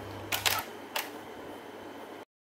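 Canon 7D DSLR shutter firing to take a photo: a quick cluster of sharp clicks about a third of a second in, then one more click about a second in.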